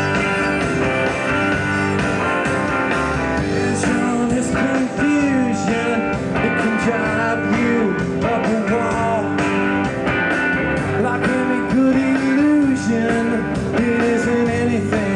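Live rock band playing a song: electric guitars, bass guitar and drums, with a lead line of bending notes over the band.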